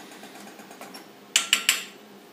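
Inverter MIG welder running on CO2 shielding gas, its arc struck in three short, sharp crackling bursts about a second and a half in: a stuttering start with the wire sticking to the work, which the welder puts down to a poor earth connection.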